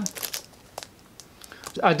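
Clear plastic wrapping on a sealed steelbook case crinkling as it is handled, with a few short crackles mostly in the first half second.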